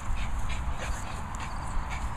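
Low rumble of wind and handling noise on a handheld phone microphone, with soft, irregular scuffs from feet and paws moving over grass.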